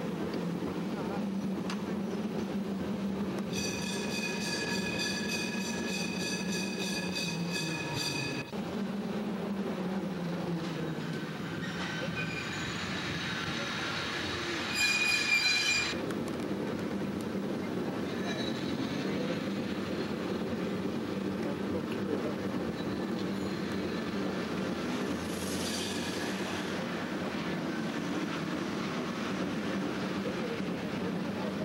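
San Francisco cable car running along its track with a steady low rumble, broken by high-pitched metal-on-metal squeals: a long one a few seconds in, a louder one about halfway, and a fainter one near the end.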